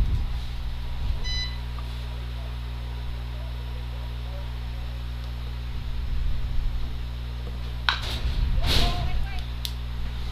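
A steady low electrical hum on the broadcast audio, with a short high beep about a second in. Near the end there is a sharp click, then a brief voice from the field.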